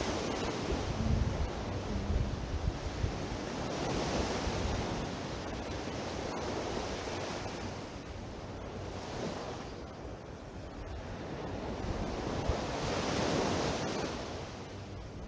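Gentle surf washing onto a sandy beach, swelling and ebbing with a louder wash about four seconds in and again near the end. Wind buffets the microphone with low rumbling gusts in the first few seconds.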